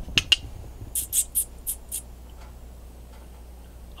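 A person making mouth clicks and kissing squeaks to call a dog: two quick clicks, then about a second in a run of five short, high-pitched squeaks.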